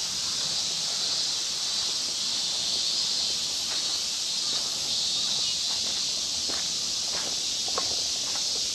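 A steady, high-pitched insect chorus hisses without a break. Footsteps on a paved path sound from about halfway in.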